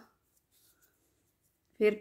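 Near silence between spoken instructions: a voice trails off at the very start and picks up again near the end, with only a few barely audible faint ticks in between.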